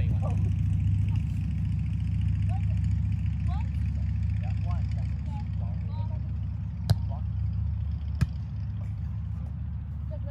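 Two sharp slaps of a volleyball being struck by hands, about seven and eight seconds in, over a steady low rumble and faint distant voices.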